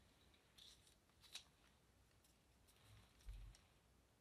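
Near silence, with a few faint, small clicks and a soft low bump a little over three seconds in, from hands handling a paper mixing cup of resin and craft tools on the table.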